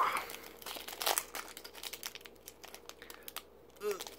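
Crinkling of a foil Pokémon card booster-pack wrapper and its plastic blister packaging being handled, in irregular small crackles that thin out in the second half.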